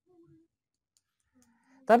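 Near silence, with a man's speech starting again near the end.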